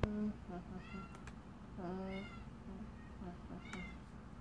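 A young girl's wordless vocal sounds: short low hums and a few higher, squealing notes that bend in pitch, with a sharp click right at the start.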